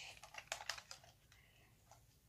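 Faint light clicks and taps, several in the first second and then fewer, from a toy model ship knocking in the hands as it is tipped and turned.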